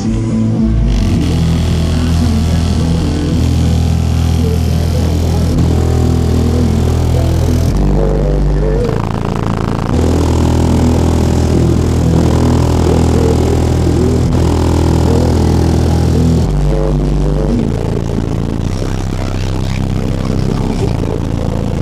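Music played at high volume through a Volkswagen Golf's Sundown Audio car stereo system during a sound demo, heard from outside the car. Deep bass notes are held for a couple of seconds each and shift in pitch, under the melody.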